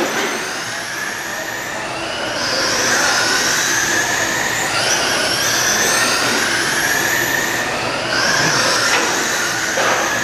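Several radio-controlled oval race trucks running flat out together, their motors and drivetrains giving overlapping high-pitched whines. Each whine climbs as a truck speeds up along a straight and drops back as it slows into a turn, again and again as the trucks lap.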